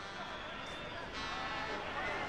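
Faint live match sound from the football pitch under a pause in the broadcast commentary: a steady low background noise with distant shouting voices.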